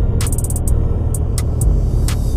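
Suzuki Access 125 single-cylinder scooter riding at road speed, heard from a camera on the scooter: a steady low rumble of wind and engine, with several irregular sharp clicks.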